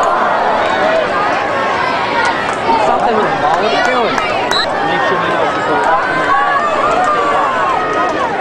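Spectators in the stands at a football game talking and shouting, many voices overlapping without a break.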